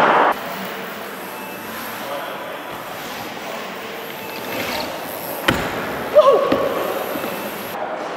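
Rocker mini BMX riding fast around a skatepark bowl, its tyres making a steady rolling noise. A sharp knock comes about five and a half seconds in, and a louder thud with a brief squeak just after six seconds as the bike comes down from a jump out of the ramp.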